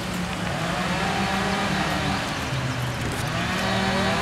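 A distant small engine, most likely a chainsaw, droning at a steady pitch that sags and recovers twice, as under load, over a steady rushing background.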